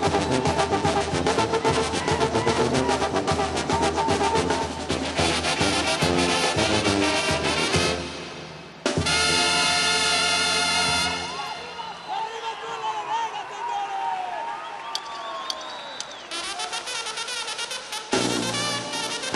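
Brass band playing a lively chilena with a steady rhythmic beat. About eight seconds in the tune breaks off and closes on a long held brass chord, followed by a few seconds of crowd voices and shouts. The band strikes up again near the end.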